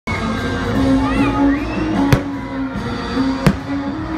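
Fireworks going off in two sharp bangs, about two seconds in and again a second and a half later, over steady music and crowd noise.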